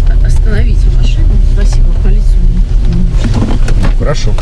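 Steady low rumble of a car heard from inside its cabin, with indistinct talk over it.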